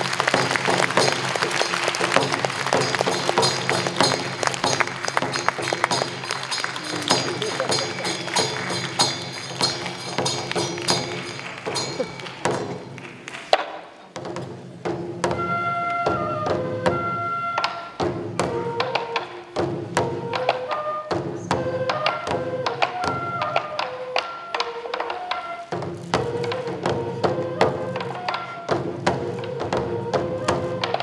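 Japanese folk dance music: transverse bamboo flutes (fue) and taiko drums struck with sticks. The first half is a busier passage with voices over the drumming. After a short dip about 13 seconds in, the flutes play a melody of held notes over steady drum beats.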